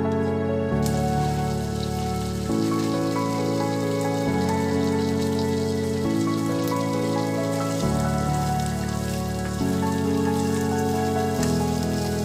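Sausage slices sizzling in a frying pan, a steady hiss that starts about a second in, under background music of slow, sustained chords that change every second or two.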